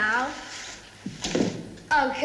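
A dull thump about a second in, between bits of children's talk.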